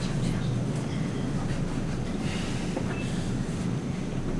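Steady low rumble of room background noise, with a few faint scattered sounds and a brief high tone about three seconds in.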